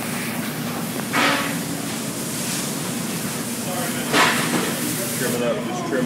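Steady background hum with a constant low tone, broken twice by a short hiss: once about a second in, once about four seconds in.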